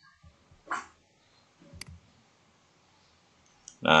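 A single sharp computer mouse click a little under two seconds in, with a short soft noise about a second earlier.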